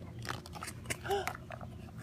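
A plastic surprise Easter egg being twisted and pulled open by hand: a series of sharp plastic clicks and scrapes as the two halves come apart. A short vocal sound comes about a second in.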